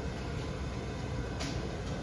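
Bowling alley background noise: a steady low rumble, with one short click about one and a half seconds in.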